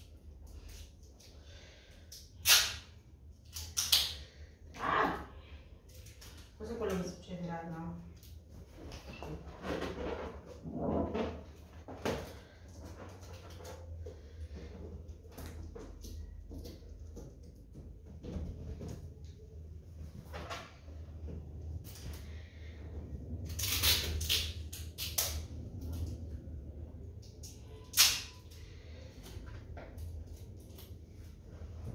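Party balloons being handled and set out by hand, with scattered sharp taps and knocks; the loudest come about two and a half seconds in and near the end.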